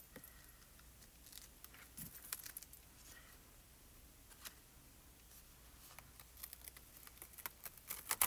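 Near silence, with a few faint clicks and rustles of a thin plastic stencil being handled and peeled off cardstock, the clicks coming closer together near the end.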